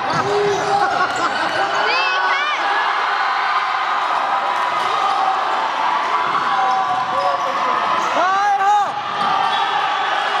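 Basketball game on a wooden gym court: a ball bouncing under steady chatter from players and spectators, with short calls about two seconds in and a louder shout near the end.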